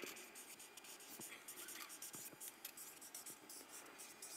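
A felt-tip marker scratching faintly across flip-chart paper in short strokes as a word is written out by hand.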